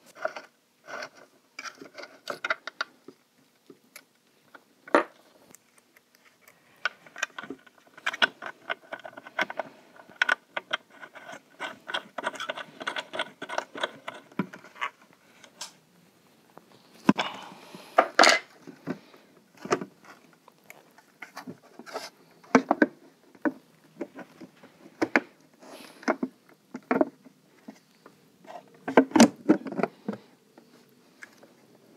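Small metal spanner working a terminal bolt on a plastic battery case lid: irregular metal clicks and scrapes, with a dense stretch of rapid clicking in the middle. A cluster of louder knocks comes near the end as the plastic lid is closed down.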